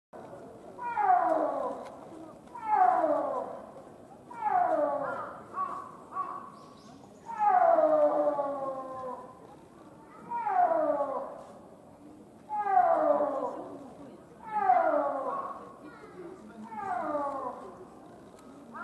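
An animal's drawn-out call that slides steeply down in pitch. It repeats about nine times, roughly once every two seconds, each call much the same as the last.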